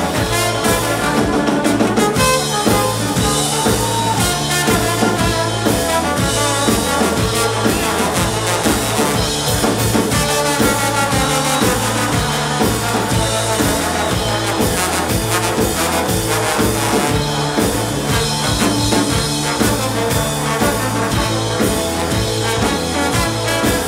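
A live ska band playing loud, with a trombone out front over electric guitar, a bass line and drum kit.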